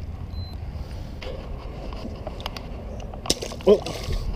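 Wind rumble and handling noise with scattered small clicks, then a sharp splash a little past three seconds in as the bass is dropped back into the water.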